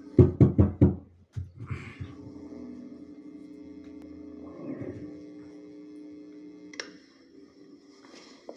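About five quick, loud knocks on a handheld microphone, then a steady sustained musical chord held for about five seconds that stops with a click near the end.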